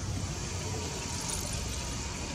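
Steady low rumble of city background noise.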